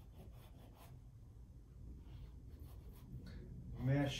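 Shiva Paintstik oil paint stick drawn across unprimed rag paper: a series of short, faint rubbing strokes over a low room hum.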